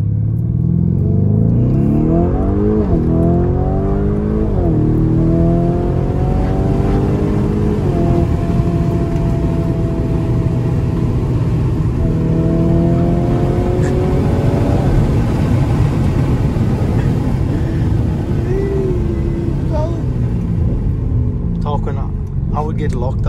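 Lamborghini Urus S's twin-turbo V8, heard from inside the cabin, accelerating hard. Its note climbs through the gears with three quick upshifts in the first eight seconds, rises again a few seconds later, then settles into a steady cruising rumble.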